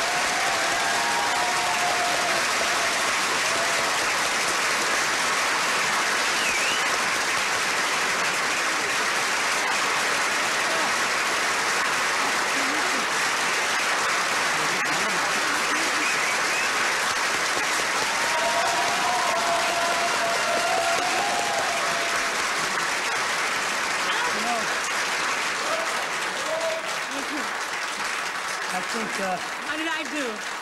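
Television studio audience applauding at length after a song, with a few voices calling out early on and again about twenty seconds in; the applause eases off near the end.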